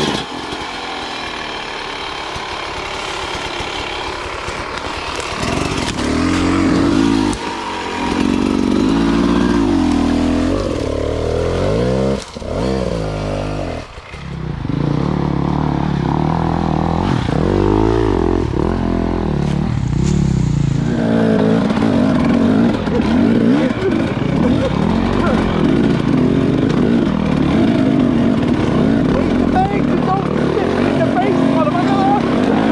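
Dirt bike engines revving up and down at low speed, the pitch rising and falling with each blip of the throttle. The engine note drops away briefly about twelve seconds in and again about two seconds later.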